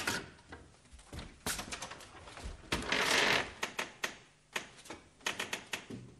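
Wooden floor trapdoor with a metal latch being worked and lifted: a run of clicks and knocks, with a louder scraping rush about three seconds in.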